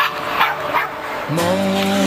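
Three short, sharp yelping sounds, then background music with held notes starting about one and a half seconds in.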